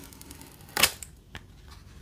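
Protective plastic film coming off the back of a clear hard-plastic phone case (Ringke Fusion Matte Clear): one short, sharp crackle a little under a second in, then a few faint plastic clicks as the case is handled.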